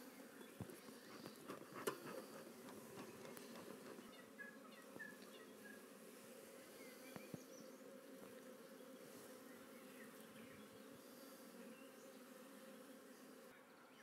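Faint, steady buzzing of a honey bee colony, with many bees flying around an opened hive and a frame lifted from it.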